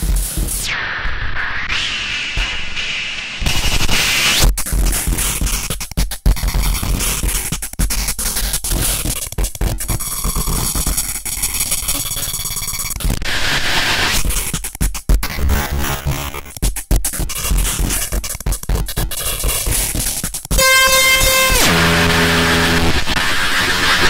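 Warstware Waoss Pad WP1, a circuit-bent Korg Kaoss Pad, processing a modified Boss DR-110 drum machine into harsh glitch noise, with chopped, stuttering bursts and filtered sweeps. About twenty seconds in, a loud buzzing tone starts and steps down in pitch.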